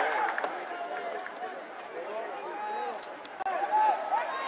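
Several raised voices of rugby players and spectators overlapping, with no clear words, and a louder shout about three and a half seconds in.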